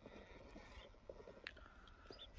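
Near silence: faint outdoor background with one soft click about one and a half seconds in.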